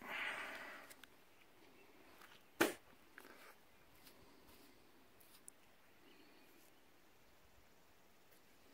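Faint handling noise: a short breathy rush near the start, then a single sharp click about two and a half seconds in, with small scattered ticks over quiet outdoor background.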